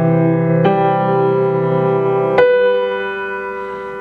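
Grand piano played slowly: melody notes are struck about half a second in and again about two and a half seconds in, over a sustained low chord, and ring on with no break in the sound. With the second note the low chord falls away as the sustain pedal is lifted.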